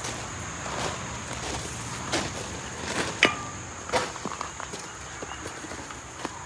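Footsteps on gravel: a few scattered steps and scuffs.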